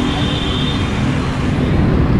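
Busy street traffic: motorbike engines running past on the road, a steady dense rumble, with a faint high steady tone in the first second.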